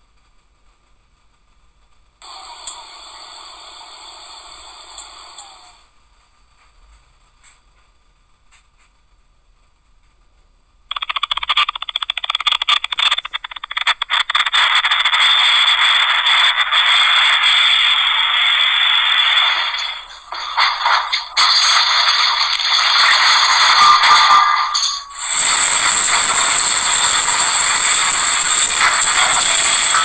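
Rattling and clattering from earthquake footage, starting about ten seconds in and turning into a louder harsh noise near the end. A shorter, quieter sound comes a couple of seconds in.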